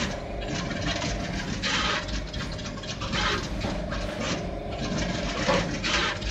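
Juki pick-and-place machine running at speed: a steady whine over a low rumble from its moving placement head, broken at irregular intervals by short hissing bursts.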